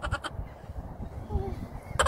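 Wind buffeting the phone's microphone as a low rumble, with a person's rapidly pulsing, wavering vocal sound ending just after the start and a brief faint voiced sound past the middle.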